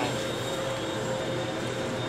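Steady room noise in a meeting hall: a continuous hum and hiss with a faint steady whine running through it, and no distinct events.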